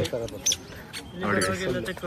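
Voices of people talking, loudest in the second half, with a few short, high chirps above them.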